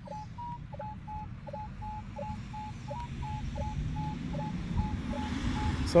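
Minelab metal detector sounding a repeating target tone as its coil is swept back and forth over a buried target: a string of short mid-pitched beeps, several a second, with shorter, lower blips between them. The beeps stop about five seconds in.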